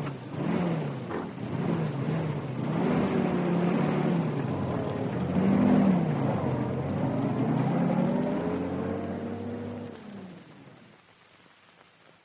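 Radio-drama sound effect of a van engine revving and pulling away, its pitch rising and falling several times, fading out near the end.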